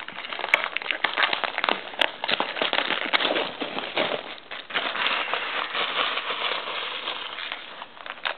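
Plastic shrink-wrap on a sealed trading-card hobby box crinkling and crackling as it is pulled off and handled, a dense run of small irregular crackles.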